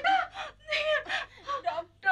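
Adult voices wailing in short, broken, sobbing cries of lament.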